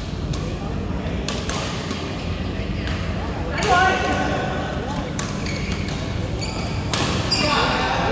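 Badminton rackets striking a shuttlecock during a doubles rally, sharp irregular cracks about once a second, ringing in a large hall over a steady low hum, with players' voices calling out twice.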